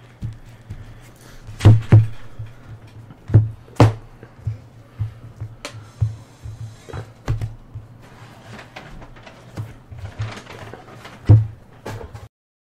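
Playing cards and deck boxes handled on a tabletop: a string of sharp knocks and taps as decks are squared, shuffled and set down, over background music with a low pulsing beat.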